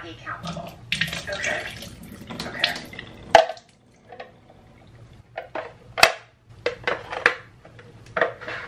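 Water from a tofu press's clear plastic reservoir poured out into a stainless-steel sink, followed by a series of sharp plastic clicks and knocks as the press is set down and fitted back together, the loudest about six seconds in.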